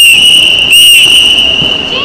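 Netball umpire's whistle blown loudly in one long blast of nearly two seconds, with a short trilling swell at the start and again about three-quarters of a second in.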